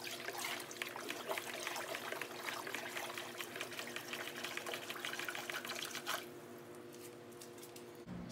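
Hand stirring water in a large plastic tub, sloshing and splashing to mix remineralizer into RO water, stopping about six seconds in. A faint steady hum stays underneath.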